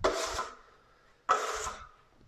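Drywall trowel scraped across a hawk twice, two short rasping strokes about a second apart.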